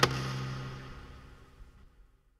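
The final hit of an electronic track: a sharp click right at the start, then its tail fading away over the next second and a half.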